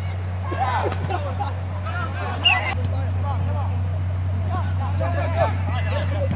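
Players shouting short calls to one another during a football match, several voices overlapping, over a steady low hum. A single sharp knock comes about two and a half seconds in.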